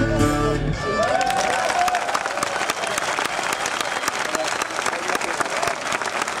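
A live band's last chord ends abruptly under a second in, and the audience breaks into applause with cheering.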